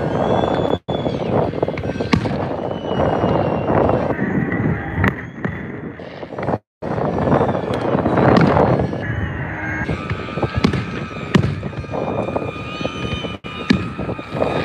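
A fireworks display going off, with a dense run of bangs and crackling bursts overlapping one another. The sound cuts out completely for a split second three times.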